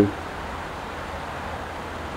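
Steady hum of road traffic from the nearby A1 trunk road, with no distinct events.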